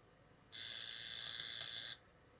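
Kenwood R-SG7 FM tuner playing a burst of static hiss with a thin high whine in it while it tunes across the band between stations; it starts about half a second in and cuts off suddenly just before the end as the tuner mutes.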